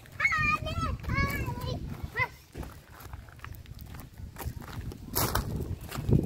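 A small child's high-pitched voice calling out a few times in the first two seconds, then footsteps crunching on a gravel path.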